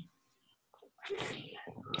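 A person's short, breathy vocal burst about a second in, after a near-silent pause.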